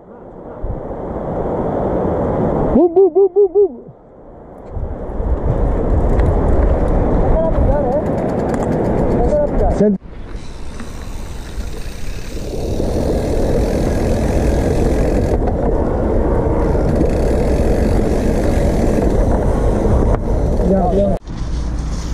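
Mountain bike rolling over a dirt and gravel trail, with wind rumbling on the helmet or handlebar camera's microphone. A short voice call is heard about three seconds in.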